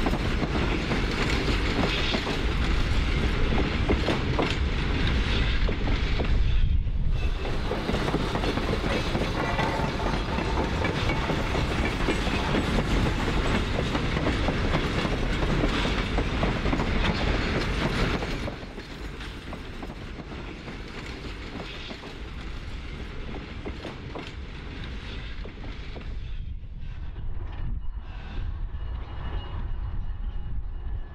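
Freight train of loaded ore hopper cars rolling along the track, its wheels clicking and rattling over the rail joints. The sound drops to a lower, more distant level about 18 seconds in and builds a little again near the end.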